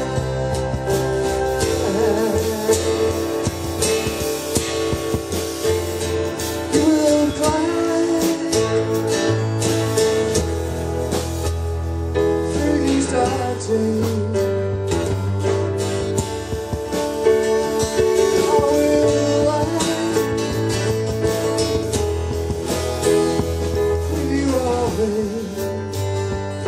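Live band playing an instrumental passage of an acoustic pop-rock song: two acoustic guitars, a keyboard piano and a drum kit, with frequent drum and cymbal hits.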